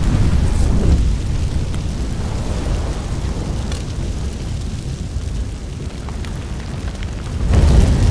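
A large fire burning through a yurt: a loud, low rumble with scattered crackles, swelling sharply about seven and a half seconds in.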